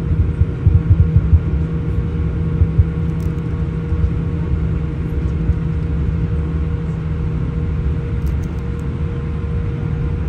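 Jet airliner cabin while taxiing: a steady engine hum over the low rumble of the wheels on the taxiway, with a few short bumps in the first second or two.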